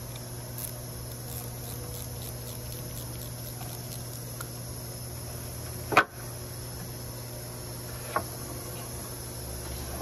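Hand tools working at an engine-mounted high-pressure fuel pump as it is pried back against its internal spring: one sharp metallic knock about six seconds in and a lighter click about two seconds later, over a steady low hum and a faint high-pitched whine.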